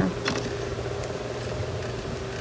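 A steady mechanical hum, as of a motor running in the background, with one faint click about a quarter second in.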